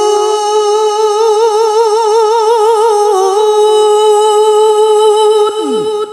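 A male Quran reciter's voice holding one long, high ornamented note with a fast, even vibrato in tarannum style. As the note ends near the close, a few short falling calls rise from the listeners.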